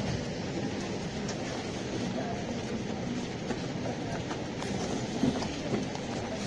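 Steady background rumble and hiss with a few scattered faint clicks, and no speech.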